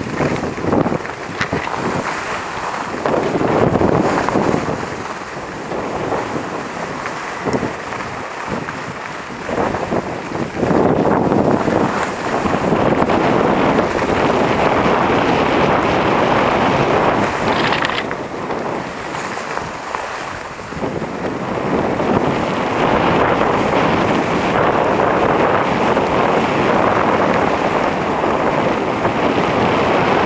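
Wind rushing over the microphone with skis hissing and scraping on groomed snow during a downhill run, swelling and easing with speed and loudest in the last third.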